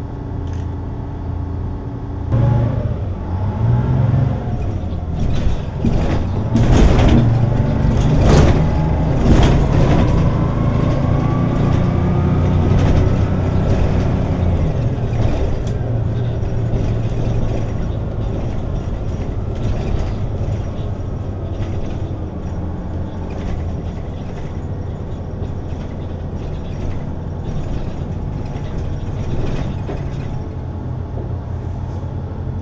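City bus heard from inside the cabin. The engine and drivetrain run with a steady low rumble and picks up about two seconds in. Clattering knocks and rattles follow between about six and ten seconds, then a rising whine as the bus accelerates, before it settles to a steady drone while cruising.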